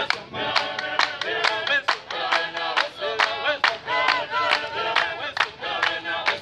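A group of voices singing together in chorus, over sharp claps in a quick, slightly uneven rhythm.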